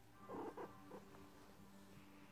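Maine Coon cat purring faintly while dozing, with a brief louder sound about half a second in.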